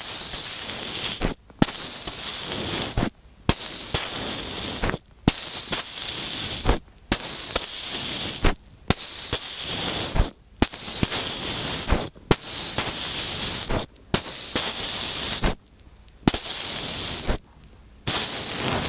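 Kinetic sand pressed and packed around small microphones buried in it, heard right at the microphones as dense crackling and crunching. It comes in stretches of a second or so, broken by brief pauses and sharp clicks.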